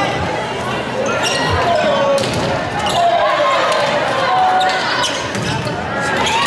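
Volleyball rally in a gymnasium: several players' and spectators' voices calling out over one another, echoing in the large hall, with a few sharp hits of the ball.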